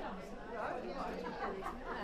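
Crowd chatter: many people talking at once while mingling, several voices overlapping with no single clear speaker.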